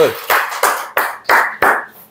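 Hand clapping in applause from a small group, about three claps a second, fading out near the end.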